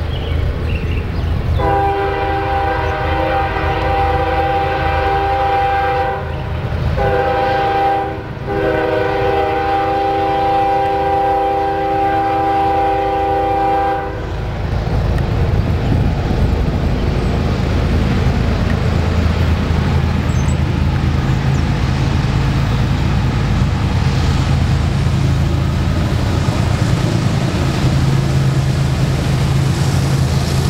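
CSX freight locomotive sounding its multi-chime air horn in three blasts (long, short, long) over about twelve seconds. After that, the lead diesel locomotive's engine rumbles steadily as the train rolls toward the camera.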